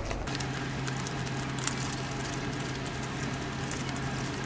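Gloved hands kneading Lab-Putty silicone dental putty, working the base and catalyst together: a steady rustle of glove and putty with many small soft ticks. A low steady hum runs underneath.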